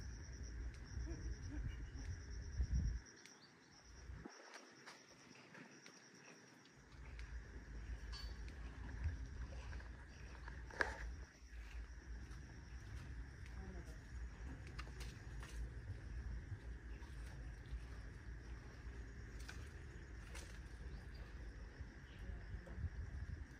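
Outdoor ambience: wind buffeting the microphone with a low rumble that drops away for a few seconds near the start, over a steady high drone of insects.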